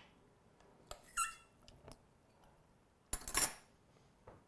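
Quiet handling sounds of a small tasting spoon on a stainless steel mixing bowl of egg salad: a few faint clicks and a short squeak about a second in, then a brief rush of noise about three seconds in.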